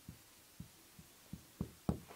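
Marker writing on a whiteboard: a run of faint, short strokes, about six in two seconds.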